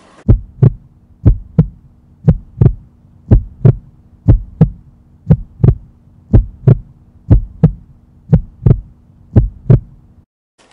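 Heartbeat sound effect: pairs of low thumps, lub-dub, about one pair a second, over a steady low hum.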